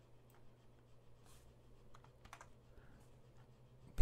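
Near silence: a few faint computer keyboard clicks over a low, steady hum.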